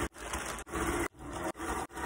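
Singer sewing machine stitching a seam through thick polythene bag plastic, running in a repeating rhythm of about two strokes a second, with the plastic rustling as it is fed.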